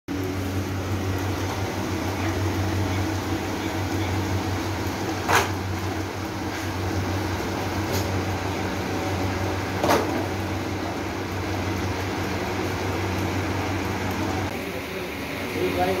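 Steady mechanical hum of a belt-driven plastic-processing machine running, with two sharp clacks about five seconds apart. The sound changes shortly before the end.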